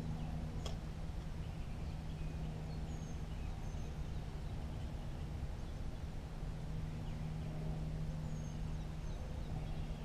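Small birds chirping in short, high calls every second or two over a steady low hum and rumbling background noise, with one sharp click about a second in.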